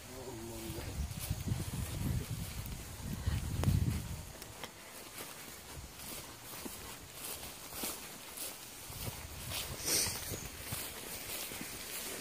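Footsteps of someone walking through long grass, with a low, uneven rumble on the microphone that is loudest about four seconds in.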